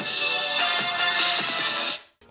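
Music playing from an iPad Air 4's built-in stereo speakers during a speaker test. It stops abruptly at the end.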